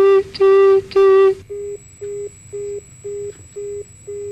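Telephone line tone beeping at one steady pitch as a videophone call ends: loud, longer beeps at first, then about a second and a half in, quieter, shorter beeps about twice a second, with a faint high whine behind them.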